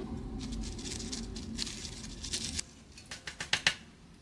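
Dry cannabis being handled and prepared close to the microphone: scattered small crackles and clicks. A low hum under them drops away about two and a half seconds in, leaving a few sharper clicks.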